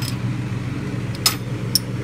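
A steady low mechanical hum, such as a fan or motor running, with two short clicks about half a second apart past the middle.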